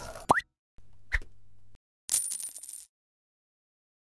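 Logo-animation sound effects: a quick rising blip, then a short plop over a low hum about a second in, then a bright shimmering chime about two seconds in.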